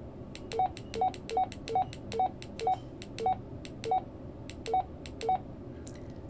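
Baofeng UV-5R handheld radio giving keypad beeps: about ten short beeps, each with a button click, as the up-arrow key is pressed again and again to step through memory channel numbers. The presses come more slowly toward the end.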